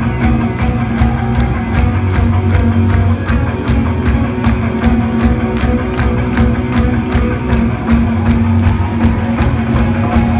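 Live rock band playing: distorted electric guitars over bass and a drum kit keeping a steady beat of about three to four hits a second.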